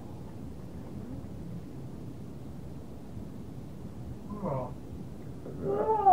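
Steady low room hum, then two short calls that fall in pitch, one about four and a half seconds in and a louder one near the end.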